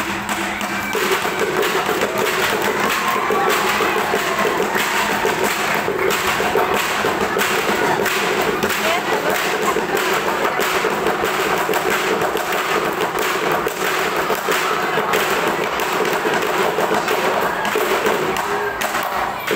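Fast, steady percussion struck with sticks, playing the accompaniment for a traditional dance: a dense run of even beats over a held ringing note.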